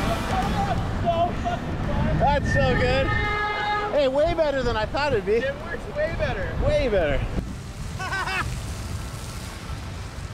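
Men whooping and laughing, their voices swooping up and down in pitch, over a constant low rumble of wind on the microphone; the shouts die away after about seven seconds.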